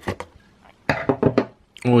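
Rigid plastic card holder being handled, giving a few short sharp clicks and taps, most of them about a second in.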